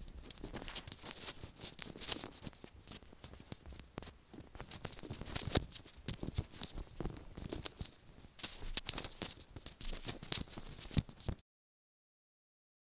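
Fingers handling a white wired earbud cable and its plastic earbud right up against the microphone, making a dense crackling, clicking rustle that cuts off near the end.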